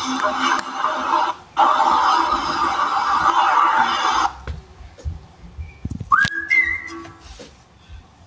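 Music playing back from a video on a screen, with a short break about one and a half seconds in, cutting off after about four seconds. About two seconds later a whistle rises to a held note, then steps up to a slightly higher one.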